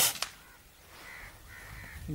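A single air rifle shot, a sharp crack at the very start, with a second, quieter click about a quarter second later. In the second half a bird gives a drawn-out call in the background.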